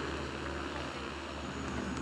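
Steady low outdoor background rumble with a faint hiss and no distinct event.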